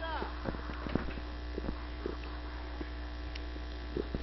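Low, steady electrical hum with faint scattered ticks and knocks. A faint voice is heard briefly right at the start.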